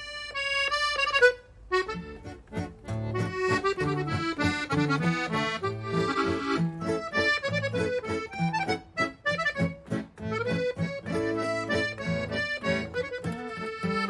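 Chromatic button accordion and acoustic guitar playing a waltz in D major. The accordion holds a chord at first and breaks off about a second and a half in, then the tune starts with bass and chord accompaniment under it.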